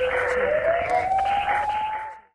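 Sound effect of a TV programme's closing logo sting: a single tone sliding slowly upward over a hiss.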